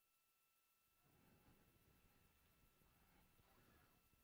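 Near silence: a lull on the broadcast audio with only a very faint hiss.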